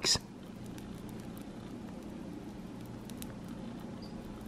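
Pop Rocks candy popping on a pizza: a faint, steady crackle of tiny scattered pops.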